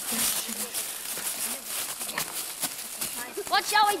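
Rustling and footsteps in dry leaf litter, with a couple of sharp ticks a little past the middle. A boy's voice starts near the end.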